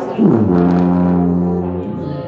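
Tuba played by a child trying out the instrument: one low note that scoops down in pitch as it starts, then is held steady for about a second and a half before breaking off.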